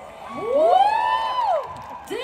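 Concert crowd cheering, with several high-pitched screams overlapping that rise and then fall away.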